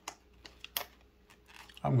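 A few sharp, irregular clicks and crackles of a plastic blister-card package being pried open by hand. A man's voice starts near the end.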